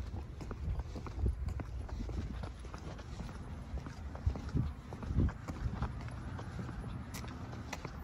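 Footsteps on pavement with the knocks and rubbing of a handheld phone as its holder walks: irregular soft thumps and small clicks.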